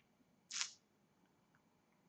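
Near silence, broken about half a second in by one short, soft hissing breath from the person at the microphone.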